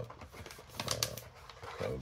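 A scoop scraping powder out of a paper coffee pouch, with a couple of light clicks about a second in.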